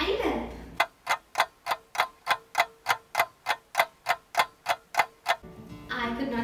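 Ticking-clock sound effect: a brief falling swish, then a steady run of sharp ticks, about three a second, over a faint steady tone, stopping about half a second before the end.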